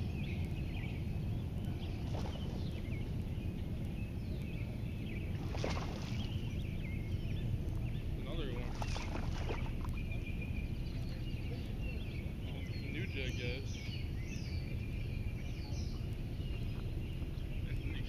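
Outdoor pond-side ambience: a steady low rumble of wind on the microphone with birds chirping, and two short splashes as a largemouth bass is played at the surface and landed.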